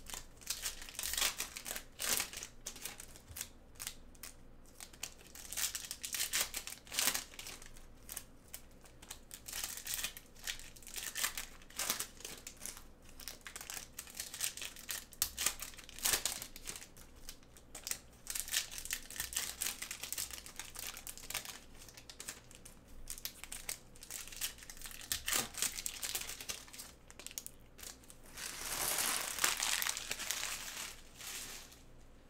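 Foil wrappers of Optic basketball card packs crinkling and tearing as gloved hands rip them open, in a run of irregular crackles. Near the end comes a longer, steadier rustle.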